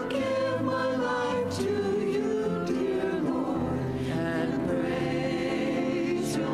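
A small mixed choir of men and women singing a worship song, with held sung notes.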